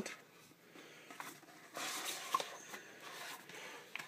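A white cardboard product box being handled: faint rustling and scraping of card with a few small clicks, louder from a little under two seconds in.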